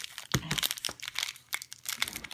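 Butterfinger candy bar wrapper crinkling and crackling in one hand as it is worked open, in irregular sharp crackles with one louder crackle about a third of a second in.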